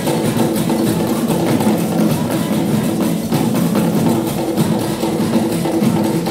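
Ewe traditional drum ensemble playing a dense, steady rhythm.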